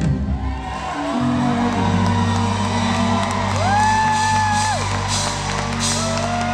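Live pop-rock band holding a long sustained chord at the end of a song, with the audience cheering and a fan whooping once, held for about a second, midway through.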